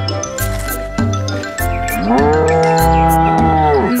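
A cow mooing once, a long call that starts about halfway, rises at its start and drops at its end, over upbeat children's music with a steady bass beat.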